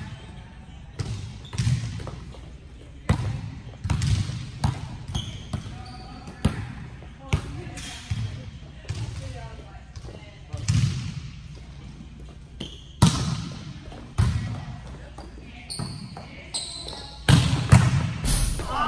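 A volleyball being struck by hands and arms and bouncing on a gym's sport-court floor, a sharp smack every second or so, each echoing briefly in the large hall.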